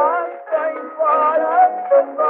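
A 1913 acoustic 78 rpm recording of a fado corrido with Portuguese guitar: a melody of wavering notes about half a second each, thin and boxy, with no deep bass or high treble.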